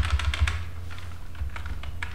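Typing on a computer keyboard: a quick run of key clicks in the first half second or so, then a few scattered keystrokes, over a steady low hum.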